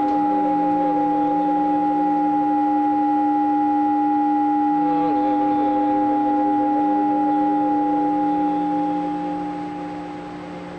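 Electronic drone music: two steady held tones, one low and one higher, with a wavering, bending pitched layer over them, fading down near the end.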